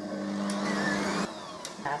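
Bosch stand mixer's motor running briefly, its whisk stirring coconut-meringue mass in a steel bowl: a steady hum with a higher whine that cuts back about a second and a quarter in as the machine is switched off.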